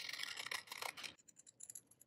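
Small scissors cutting through a sheet of paper: a soft, crisp slicing for about the first second, then a few light clicks of the blades.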